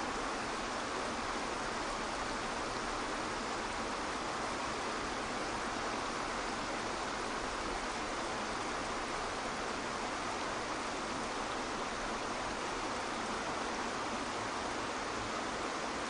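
Waterfall pouring into a pool: a steady, unbroken rush of falling water.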